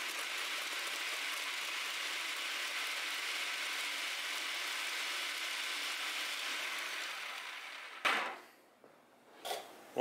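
Electric food processor running steadily, its blade chopping carrot chunks into fine pieces. The sound eases slightly and stops about eight seconds in, with a sharp knock.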